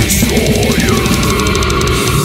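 Brutal death metal: fast, dense blast-beat drumming under heavily distorted guitars, with a cymbal crash just after the start and a guitar note sliding down and then held from about a second in.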